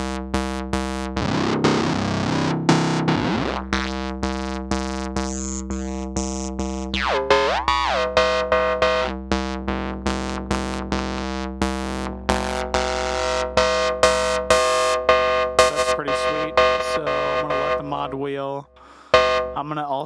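Reaktor Blocks modular software synth patch playing quick repeated pitched notes, the tone sweeping and gliding as the mod wheel modulates the filters and FM. Near the end the sound cuts out briefly and comes back with a sharp loud note.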